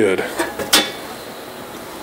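Two light handling clicks, the sharper one under a second in.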